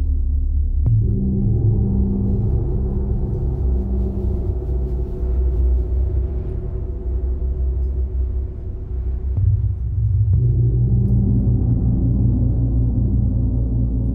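A large hanging gong struck about a second in, ringing on as a deep, long-sustained hum. Its tone swells again around ten seconds in, as with a fresh stroke.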